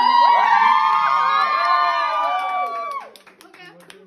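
A group of women shrieking and cheering together in long, high-pitched overlapping calls that cut off about three seconds in, followed by a few scattered claps.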